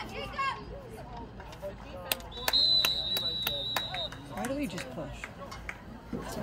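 A referee's whistle blows one steady, shrill blast of about a second and a half, starting about two and a half seconds in, blowing the play dead after a tackle. Several sharp clacks come around it, over scattered voices of players and spectators.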